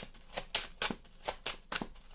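A deck of large oracle cards being shuffled by hand: a quick, irregular run of soft card-on-card slaps, about four or five a second.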